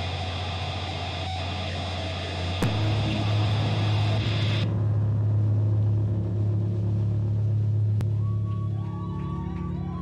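Distorted electric guitar and bass amplifiers ringing out with a steady low hum as a heavy metal band's song ends. The noisy upper part cuts off suddenly about halfway through, leaving only the low amp hum, with a faint wavering tone near the end.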